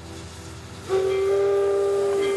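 A train whistle sounds one long, steady blast that starts suddenly about a second in, with a second, higher tone joining it shortly after.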